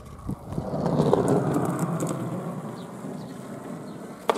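Skateboard wheels rolling on hard ground: a steady rumble that swells in the first second and then slowly fades, with a small click near the start.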